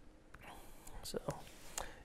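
Quiet pause in a talk: low room tone, a softly spoken 'so' about a second in, and a few faint clicks.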